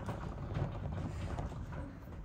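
Low, steady rumbling handling noise from the recording camera being turned to pan across the boards.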